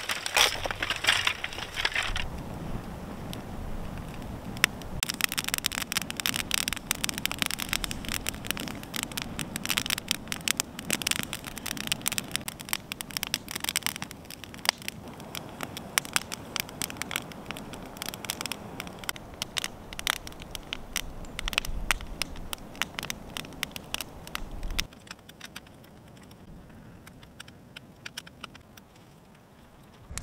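Campfire crackling and popping in quick, irregular snaps, thinning out and quieter for the last few seconds.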